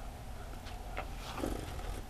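Quiet room with faint sounds of beer being sipped and swallowed from glasses: a few light ticks and a soft gulp about one and a half seconds in.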